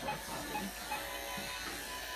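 Electric pet clippers running with a steady buzz as they shave through matted cat fur.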